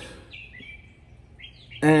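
A small bird chirping: two short whistled calls, the first about half a second in sliding down in pitch, the second a little before the end, over faint outdoor background noise.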